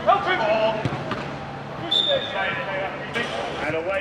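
Players shouting and calling to each other during a five-a-side football game, with a few sharp thuds of the ball being kicked. A short high whistle comes about two seconds in.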